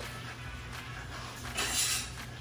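Low background music, and near the end a short hiss as minced garlic goes into bubbling butter browning in a pan.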